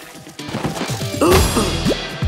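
Cartoon sound effects of a shovel breaking through packed earth: a loud crash about one and a half seconds in, followed by a few quick falling swoops, over background music.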